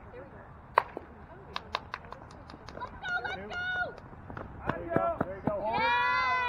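A softball bat hits a pitched ball with one sharp crack about a second in, followed by a few lighter clicks. Then players shout and cheer, louder near the end.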